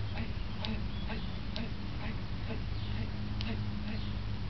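A few short, sharp slaps of forearms and hands meeting as two people trade strikes and blocks, over a steady low hum.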